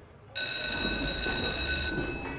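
Electric school bell ringing in one steady tone in a college corridor. It starts suddenly about a third of a second in and cuts off just before the end, over a low rumble.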